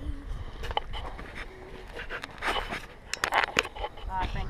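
Footsteps scraping on a rocky, gravelly trail, with scattered clicks of shoes on stone. The loudest steps come about two and a half and three and a half seconds in.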